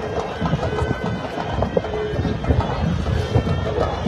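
Outdoor crowd voices with a reedy wind instrument playing a folk tune in the background, its held notes standing out now and then.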